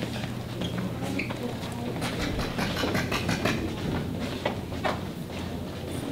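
Footsteps on a hard hallway floor, irregular clicks of shoes walking, over a steady low hum.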